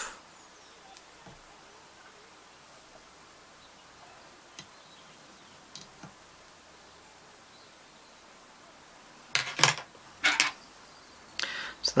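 Quiet room tone with a few faint ticks as the tying thread is whip-finished at the fly's head, then two short crisp sounds about a second apart near the end.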